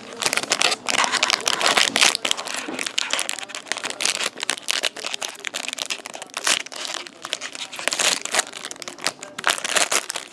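Foil wrapper of a sealed Playbook hockey card pack being torn open and crumpled by hand: a dense run of sharp crinkling and crackling.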